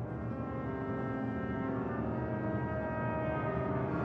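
Orchestral jazz crossover music from a jazz sextet and string orchestra: sustained low chords held out and slowly swelling louder.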